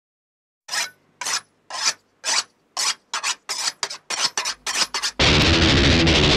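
A hand saw cutting wood in rasping back-and-forth strokes, slow at first and getting quicker, used as a sound-effect intro. About five seconds in, loud heavy metal with distorted guitars cuts in.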